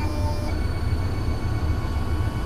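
Taig CNC mill table being driven along by its stepper motors while a dial indicator sweeps the clamped workpiece: a steady low hum with several high, steady whining tones joining about half a second in.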